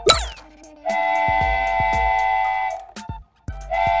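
A quick cartoon whoosh with falling pitch, then a cartoon steam-train whistle held for about two seconds. The whistle sounds again near the end, over children's background music with a steady beat.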